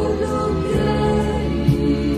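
Christian worship music: a choir singing held notes over instrumental backing with strong bass.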